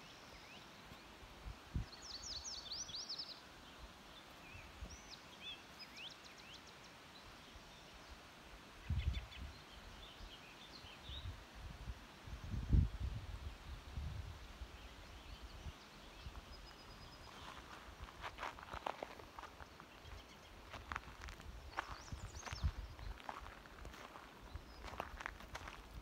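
Faint outdoor quiet with a few small birds chirping, quick high rising notes, in the first half. There are a few low thumps on the microphone, and in the second half a run of short crunching steps on a gravel road.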